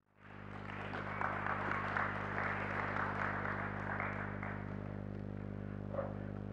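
Audience applause, swelling over the first second and dying away about two-thirds of the way through, over a steady low electrical hum.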